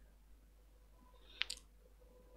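Two short, sharp clicks in quick succession about a second and a half in, over faint room tone.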